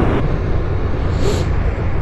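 Steady wind rush over the microphone with low engine and road rumble from a 2023 Suzuki GSX-8S motorcycle under way at low speed. The hiss eases slightly about a quarter second in.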